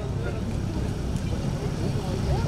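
A steady low rumble of outdoor ambience, with faint voices from a crowd.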